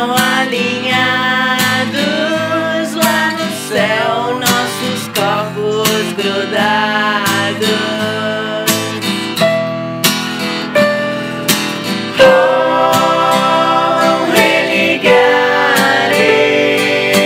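Acoustic rock song: strummed acoustic guitar with a voice singing over it.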